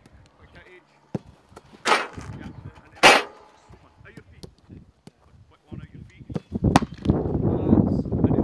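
Footballs being struck hard in a shooting drill: two loud kicks about two and three seconds in, and another sharp strike near the end, followed by a steady noisy stretch.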